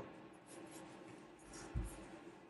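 Faint rustling of hand-knitting: metal needle tips and wool yarn rubbing as stitches are worked, with one soft low bump about three-quarters of the way through.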